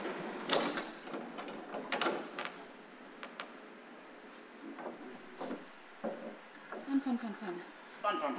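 Scattered knocks, clatters and scrapes as a steel bar clamp and wooden cleats are handled against a fiberglass bulkhead, with a short low murmur of voice near the end.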